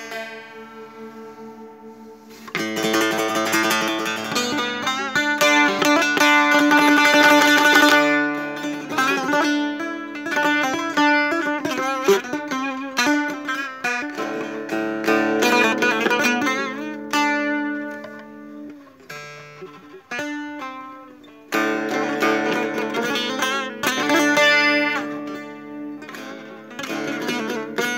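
Solo setar, the Persian long-necked lute, played in free improvisation: soft held notes at first, then quick runs of plucked notes from about two and a half seconds in. It drops quiet about three quarters of the way through, then comes back in suddenly and loud.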